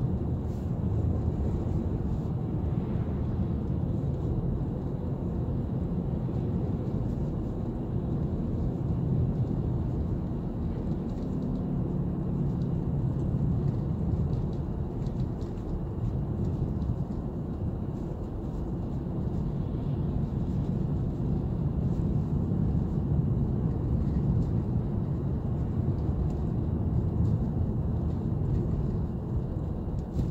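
Steady low road rumble inside a moving car's cabin: tyres rolling on a snow-covered road, with the engine under it.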